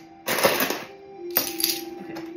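Seashells clattering in a clear plastic tub as a hand stirs them. There is a short rattle about a quarter second in, then a couple of sharp clicks past the middle.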